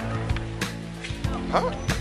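Background music with steady held notes, and a short questioning 'huh?' from a voice near the end.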